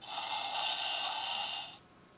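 Electronic spaceship sound effect from the Transformers Millennium Falcon toy's small built-in speaker: a steady hissing whoosh lasting under two seconds that cuts off suddenly.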